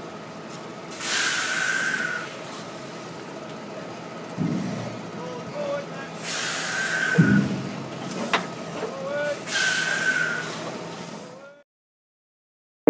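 High-tip trailer machinery running steadily while wood chips are tipped into a truck trailer, with three short hisses of about a second each and a couple of low thumps.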